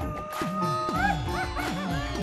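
Comic background score for a reaction beat: a melody with bending, sliding notes over a bass line of quick falling pitch drops, several a second.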